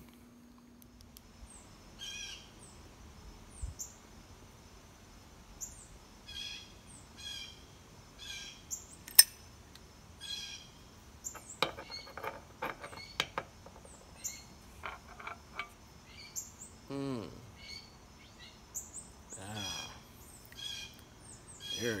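Small birds chirping outdoors: short high chirps repeating every second or so. There are a few sharp clicks and taps around the middle, one of them much louder than the rest, and two low downward-sliding sounds a few seconds before the end.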